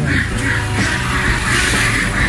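Background music with a steady bass line, with live ducks quacking over it again and again.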